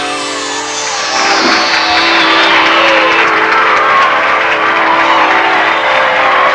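A funk band's closing chord held steady, with a falling whooshing sweep running down through it.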